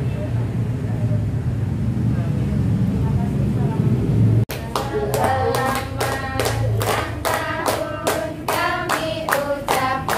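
Low rumbling background noise, then after a sudden cut about halfway through, a group singing together while clapping hands in time, about three claps a second.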